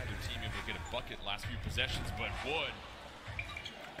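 Basketball bouncing on a hardwood court as it is dribbled, a series of short thuds.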